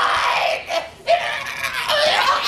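A person screaming loudly in a high pitch: one long scream that breaks off about a second in, then starts again.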